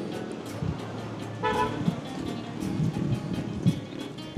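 Street traffic noise with a short car horn toot about a second and a half in.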